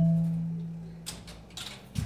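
Struck notes from a robotic kinetic mallet instrument ringing out and fading: a low note and a higher note sounded together, dying away over about a second and a half. A few faint mechanical clicks come a little past halfway, and the next notes are struck right at the end.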